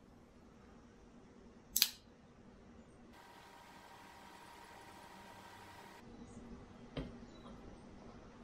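Quiet handling of a knife edge on a sharpness tester set on a digital scale: a sharp click about two seconds in, a fainter tick near the end, and a faint steady hiss in between.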